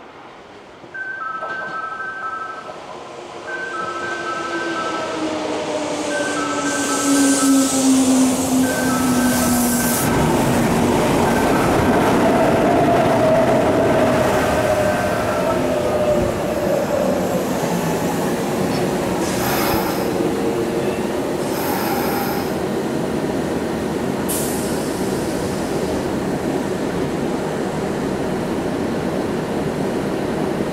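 Kintetsu 6020-series electric train passing through the station without stopping: its motor whine falls in pitch as it draws near, then loud wheel-on-rail noise runs on with several sharp clanks over the rail joints. For about the first half, a two-note electronic warning tone repeats steadily.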